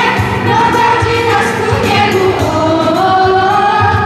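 Children's choir singing a song in Polish into microphones, with instrumental accompaniment.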